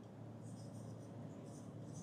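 Faint, intermittent scratching of a marker pen writing on a whiteboard.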